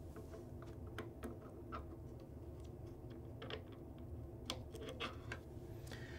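Irregular light clicks and taps of metal on metal as a crankshaft pinning jig is pushed into the bore of a harmonic damper, over a low steady hum.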